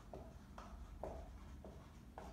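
Dry-erase marker writing on a whiteboard, about four short strokes as a word is written out.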